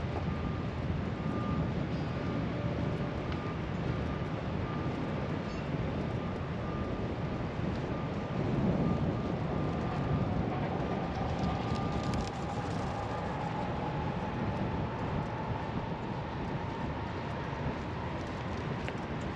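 Steady outdoor rumble of motor vehicles, with a faint on-and-off high tone through the first part and an engine note rising slowly in pitch over the second half.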